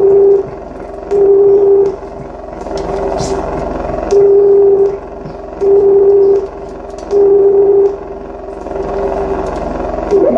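Live electronic experimental music: a loud, steady electronic hum pulsing on and off, each burst under a second long and coming about every one and a half seconds, over a rough, crackling noise bed.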